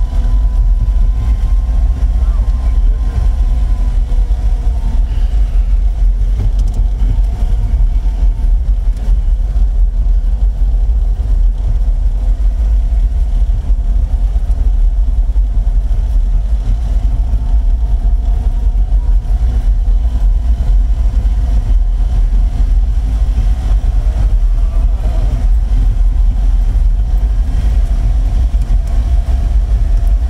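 Steady low rumble of a small old Fiat's engine and tyres driving slowly over cobblestones, heard from inside the car.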